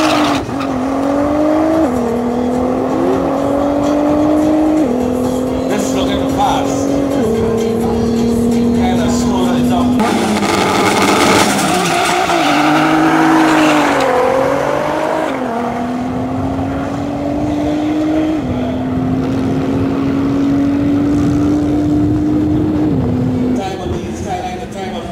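Nissan GT-R's twin-turbo V6 at full throttle down a drag strip, its note climbing and then dropping sharply at each quick upshift, four shifts in the first ten seconds. After a burst of noise, engines rev unevenly at the start line, then a car launches and climbs through its gears again, with two more shifts near the end.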